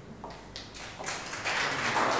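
Audience applause starting with a few scattered claps and swelling into dense clapping that grows much louder over the second half.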